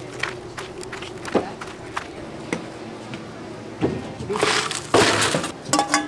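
Light scattered ticks, then from about four seconds in a loud crinkling rustle of paper wrappers and a plastic cup being dumped into a lined trash bin.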